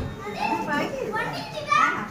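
Children's voices, talking and calling out, with a high-pitched rising call near the end.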